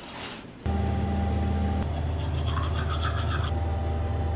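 A steady low mechanical hum that starts suddenly about half a second in, with a faint rasping sound over it for a second or two in the middle.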